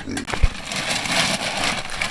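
Rustling and crackling of a paper sack of pelleted hog feed as pigs nose and root at it, with one dull thump about half a second in.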